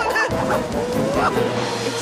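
Cartoon soundtrack: music with drum hits under high, squeaky character yelps and squeals that glide up and down in pitch, one long rising squeal about a second in.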